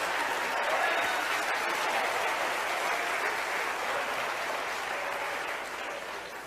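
Audience applauding, the clapping slowly dying down toward the end.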